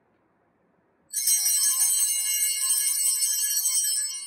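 Altar bells ring out about a second in: a sudden, loud, sustained cluster of bright ringing tones that holds steady. They are rung as the priest receives Communion.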